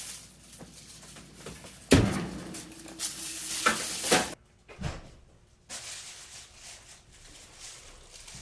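Kitchen handling noises: a loud thump about two seconds in as the oven door is shut, then about a second of rustling and clatter. After a short near-silent gap, only faint room sound is left.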